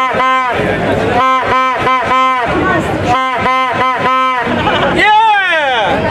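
A plastic stadium horn (vuvuzela-type) blown in short blasts on one steady note, in a chant rhythm: one blast, then two groups of four, with a crowd chattering behind. Near the end a longer sound bends up in pitch and falls away.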